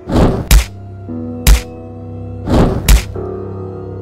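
Three cartoon thunks about a second apart, the first and last each led in by a short swish, as cardboard box lids are flipped open, over background music.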